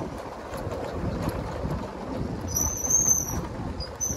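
Motorcycle riding along a rough hill road: a steady rumble of engine, tyres and wind noise. A brief high squeal comes in about two and a half seconds in.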